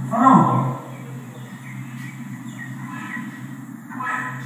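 A short, loud voice-like call about a quarter second in, its pitch falling, over a steady low hum.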